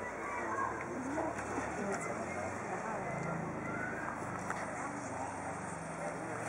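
Indistinct chatter of several people talking at once, with a steady low hum underneath.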